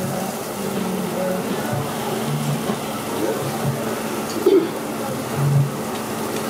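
Jeju black pork sizzling on a tabletop grill, a steady hiss, with metal tongs turning the meat and one short clink about four and a half seconds in.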